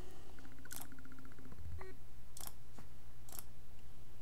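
Three short computer mouse clicks spread over a few seconds, over a steady low hum.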